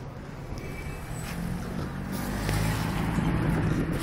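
A motor vehicle's engine running close by amid street traffic noise, growing steadily louder from about a second in.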